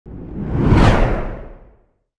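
A whoosh sound effect with a low rumble under it, played over a logo animation. It swells and rises in pitch to a peak about a second in, then fades away.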